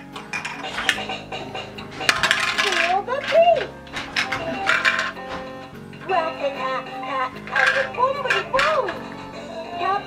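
Hard plastic shape-sorter pieces clicking and clattering against a plastic sorter bucket as a toddler handles them, several times over, with music playing and a child's wavering voice.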